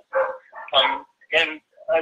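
A dog barking: three short barks about half a second apart.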